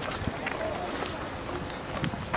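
Schoolyard ambience: indistinct voices of students talking in the background, with no clear words.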